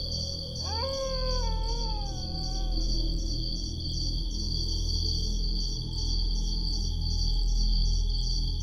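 Ambient suspense background music with a steady low pulse and a held high tone. A gliding tone rises briefly about a second in, then falls slowly in pitch until about three seconds in.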